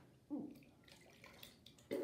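Water being drunk from a drinking glass: two gulps, one shortly after the start and one near the end, with faint wet clicks between them.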